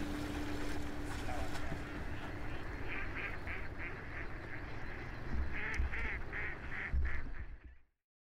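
Ducks quacking in two quick runs of calls, about four a second. The sound stops just before the end.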